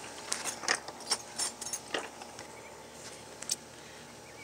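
Light clicks and taps from handling small hand tools, several in the first two seconds and one more near the end.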